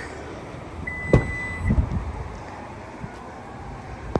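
Power tailgate of a Lexus RX 350h opening. A steady beep lasts under a second, starting about a second in, followed by a thump as the latch releases and then a low sound as the electric tailgate lifts.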